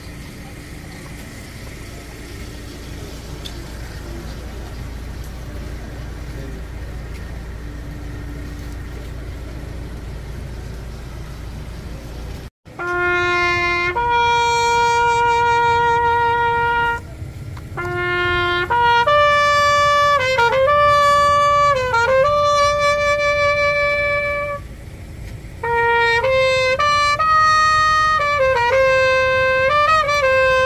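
A solo trumpet plays a slow call of long held notes, some of them wavering or bending in pitch, with short breaks between phrases. It starts about twelve seconds in, after a brief dropout in the sound. Before that there is only a low, steady background hum.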